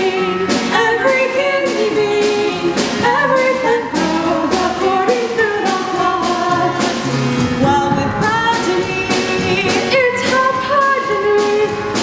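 Two female voices singing a lively musical-theatre duet, live on stage, with a steady beat.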